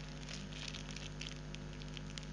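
Faint rustling and crinkling of a plastic packaging bag being handled, with small scattered crackles over a steady low hum.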